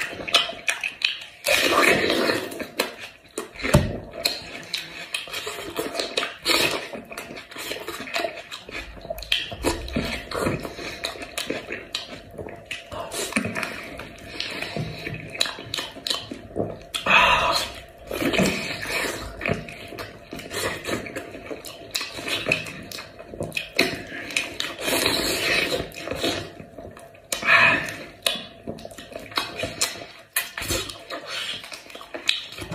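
Close-miked eating of spiced sheep's head meat: wet chewing, lip smacking and slurping in an irregular run of short bursts, with louder bites here and there.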